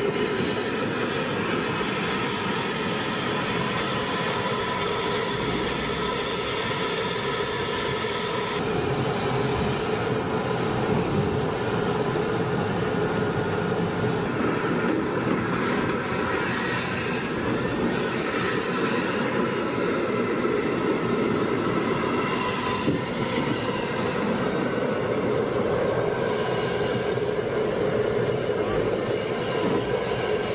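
Tracked armoured vehicles, M1 Abrams tanks, running: a steady mechanical rumble with a whine in it. Brief high squeals, typical of tank tracks, come twice around the middle and again near the end.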